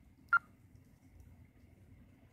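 A single short electronic beep, one clear tone about a third of a second in, over faint steady hum.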